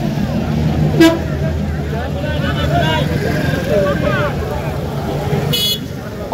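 Roadside market chatter over a steady low traffic hum, with a short vehicle horn toot about a second in and a brief high-pitched horn beep near the end.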